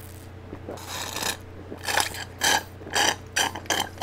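Sucking a drink through a straw from a small carton: a series of short, rasping slurps starting about a second in and coming quicker toward the end.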